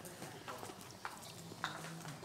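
Scattered footsteps and light knocks on a hard floor as people walk about, with faint talk in the background.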